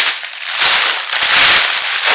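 Clear plastic packaging bag crinkling loudly in a run of uneven rustles as it is pulled open and off a garment.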